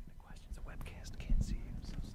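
Quiet off-mic whispering and murmured voices, with low bumps and rubbing from a handheld microphone being handled as it is passed from one speaker to the next.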